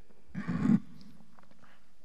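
A person's short, rough throat-clearing noise, about half a second long, near the start, picked up by the microphone, followed by a few faint small noises.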